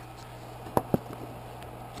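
Computer power supply's cooling fan running with a steady low hum, broken by two light clicks close together a little under a second in, from the phone and charger cable being handled.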